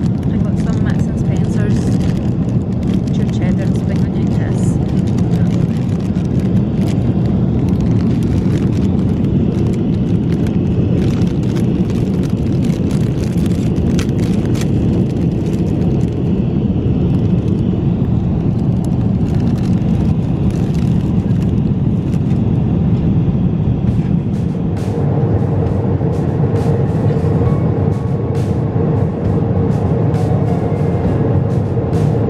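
Steady, loud cabin roar of a Boeing 777 airliner in flight, with the crinkling of a foil-lined crisp packet being handled at the seat, and a steady hum joining about 25 seconds in.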